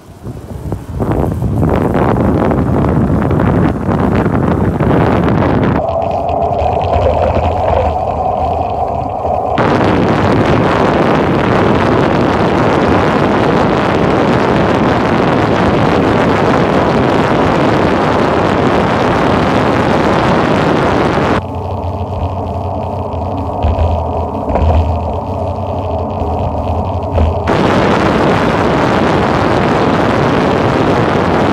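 Heavy wind noise blasting the microphone of an Apollo Ultra electric scooter at high speed on a downhill run. Twice, for a few seconds, the wind rush eases and a steady hum shows through.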